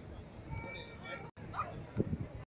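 Faint voices of people nearby, with the sound cutting out for an instant just after a second in.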